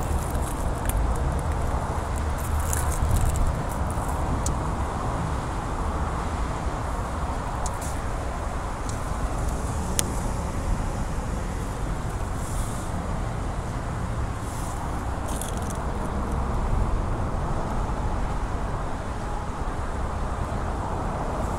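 Steady low outdoor rumble, with a few short rustles and a sharp click as thick rubber-jacketed cables are handled, one click about halfway through.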